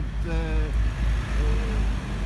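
Low, steady rumble of road traffic, under two drawn-out hesitation sounds from a man's voice.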